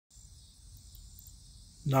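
Steady, faint, high-pitched chorus of crickets and other insects, with a man's voice starting right at the end.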